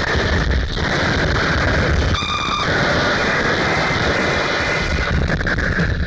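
Harsh industrial noise track: a dense wall of distorted noise with heavy low rumble, with a short buzzing pitched tone about two seconds in.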